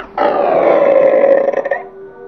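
A ghost's growling roar, about a second and a half long, its pitch sinking slightly before it cuts off.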